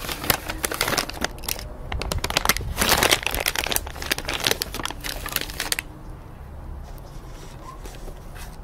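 Crinkling of a plastic bag of gummy candy blocks being handled: a run of irregular crackles that thickens about three seconds in and dies down after about six seconds.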